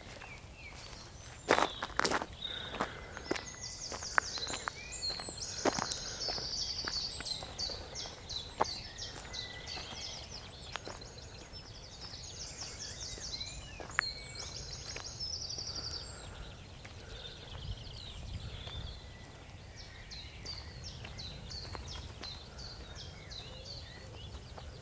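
Footsteps and handling clicks from someone walking a lakeside path with a handheld camera, a few sharper knocks about a second and a half in. Behind them, repeated short bursts of high, rapid trilling from about four seconds in until past the middle.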